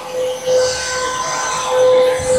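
A steady mid-pitched hum with even overtones, holding one pitch throughout, over a faint high hiss.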